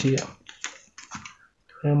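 A quick run of light clicks and taps from a plastic ruler and pencil being set down and positioned on drawing paper.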